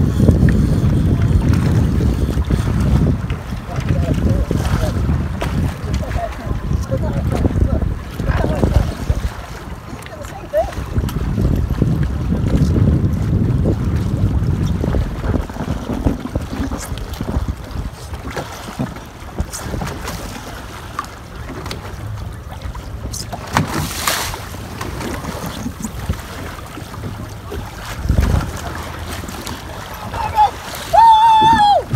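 Wind buffeting the microphone over open sea, a fluctuating low rumble, with water lapping around a boat and a short noisy burst about three quarters of the way through.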